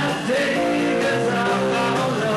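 Rock band playing live: guitar with a singer's voice over it.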